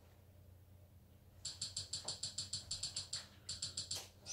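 A fast run of light, even clicks, about eight a second, starting a second and a half in with a short break near three seconds, as a Kodi menu is scrolled down one item at a time with a wireless keyboard's arrow keys.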